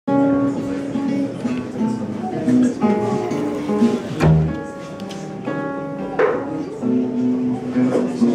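A small acoustic band playing live, with plucked banjo, guitar and upright double bass and held melody notes over them. There is a single heavier low thump about four seconds in.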